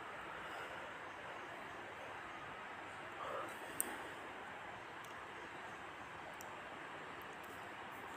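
Onion pakoras deep-frying in hot oil in a kadhai: a faint, steady sizzle, with one brief click about four seconds in.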